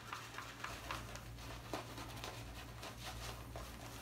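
Synthetic-knot shaving brush working shave cream into a lather on a day and a half of stubble: a faint, quick, crackly swishing of bristles on skin.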